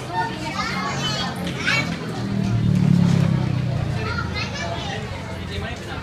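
Several voices talking and calling out, some through a microphone, with acoustic guitar chords sounding faintly and steadily beneath. The chords are loudest around the middle.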